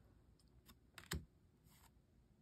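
Faint clicks of tarot cards being handled and slid against one another in the hand, with one sharper card tap a little after a second in.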